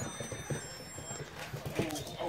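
Puppies' claws clicking and scuffing irregularly on a tile floor as they move about, with faint high electronic beeping tones from a toy that has just gone off, fading out a little past a second in.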